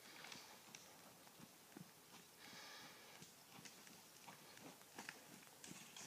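Very faint, scattered soft thuds of a horse's hooves trotting on a sand arena, barely above silence.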